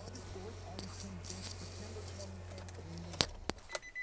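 A steady low hum in the van's cabin stops about three seconds in with a sharp click, followed by a couple more clicks and a short high electronic beep near the end.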